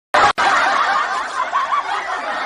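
Laughter from several people, snickering and chuckling, cutting in suddenly out of silence just after the start.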